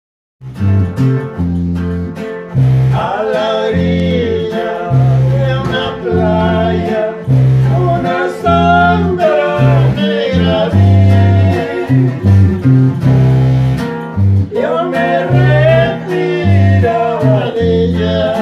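Electric bass guitar and guitar playing the instrumental opening of a ranchera-style song, with deep bass notes moving beneath a wavering lead melody.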